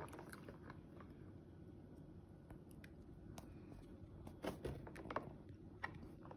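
Fingers squishing and poking sticky slime in a plastic tub: faint wet squelches and small clicks, with a few louder ones about four and a half to five seconds in.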